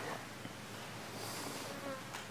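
Quiet outdoor background with a faint insect buzz.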